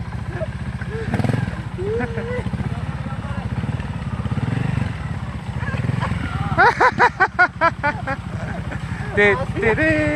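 Trials motorcycle engine running at low revs, a steady low throb while the bike is worked through a tight turn. About six and a half seconds in, a burst of laughter cuts across it.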